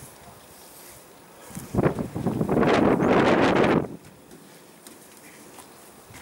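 A wet window-cleaning strip washer being scrubbed across a glass pane: about two seconds of loud swishing that starts a couple of seconds in and stops sharply.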